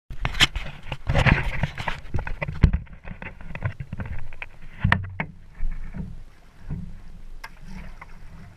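Kayak paddle strokes: the blade dipping into the water and splashing beside the plastic hull, with scattered knocks over a steady low rumble. In the first two seconds there is louder knocking and rustling as the hull-mounted camera is handled.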